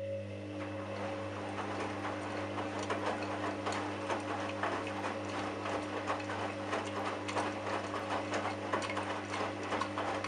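Candy front-loading washing machine's drum motor running with a steady hum as the drum turns the load in the first high-water-level rinse, with a dense, irregular clicking and rattling over it.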